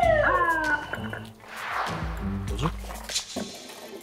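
A police car siren gives a short wavering wail that slides down in pitch and dies away about a second in, over background music with a sung voice.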